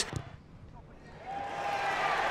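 Rugby stadium crowd, hushed at first, then a cheer swelling up from about halfway through as a penalty kick at goal is taken.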